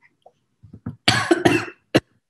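A woman retching as if about to vomit: two strong, rough heaves about a second in, then a short third one at the end.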